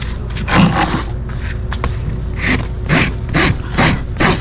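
Farrier's rasp filing a horse's hoof wall in a series of short strokes, about eight or nine of them, coming quicker, about two a second, in the second half.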